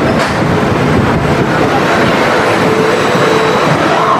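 Twisted Cyclone roller coaster train rolling along its steel track at close range, its wheels making a steady rumble and clatter.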